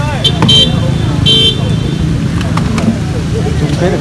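Voices talking in the background over a steady low rumble, with two short high-pitched beeps in the first second and a half.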